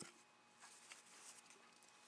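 Near silence, with a single faint click right at the start as a Fox 40 RC model airplane engine's propeller is turned by hand against compression.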